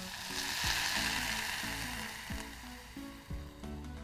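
Water poured from a plastic jug into a hot saucepan of sautéed green peas and onion, sizzling and splashing as it hits the hot oil. The hiss swells about half a second in and fades over the following few seconds.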